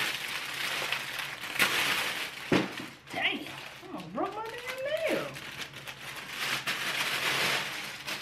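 Thin plastic packaging bag crinkling and rustling as it is torn open and pulled off a pair of boots. About halfway through comes a short rising, wavering vocal sound.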